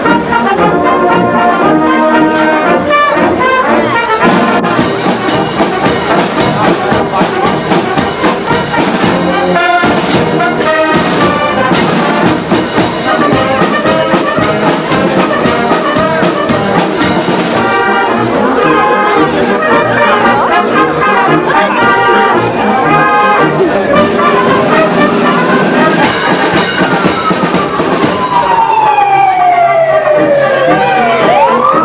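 Brass band playing a piece, with tuba and other brass. Near the end, long sliding tones fall and rise in pitch.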